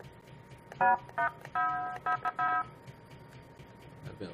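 Short electronic synth tones played in quick succession: about six clean, steady-pitched notes over roughly two seconds, the longest near the middle.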